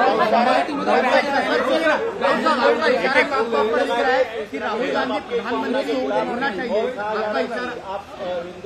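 Several people talking over one another, a jumble of overlapping voices with no single speaker standing out.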